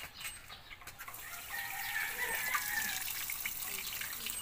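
Tap water running onto a chicken as it is bathed, starting about a second in, with a drawn-out high call from the chicken over the water in the middle.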